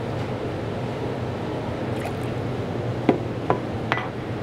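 Steady café background noise with a low hum, broken by three light, sharp knocks near the end.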